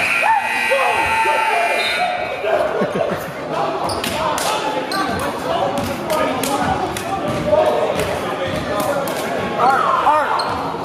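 End-of-game scene in a gym: a steady buzzer tone for the first couple of seconds, then players shouting and cheering over sneaker squeaks, claps and a bouncing basketball, echoing in the hall.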